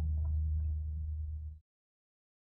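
Steady low hum with a couple of faint ticks over it, cutting off suddenly about one and a half seconds in to dead silence.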